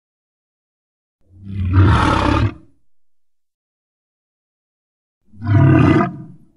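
Tarbosaurus roar sound effect from a CGI dinosaur film: one roar about a second in, lasting about a second and a half, and a second roar starting near the end, with silence between them.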